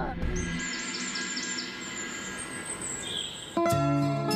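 Drama soundtrack: a run of short, high bird chirps over a held, steady musical drone, then a bright chiming melody on mallet percussion starts about three and a half seconds in.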